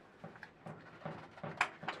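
A handful of light, scattered clicks and taps from a spanner and nut on a battery terminal as copper bus-bar links are fitted across a bank of six-volt deep-cycle batteries.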